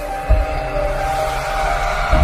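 Dramatic intro music: several held chord tones over a low rumble, with a deep boom about a third of a second in.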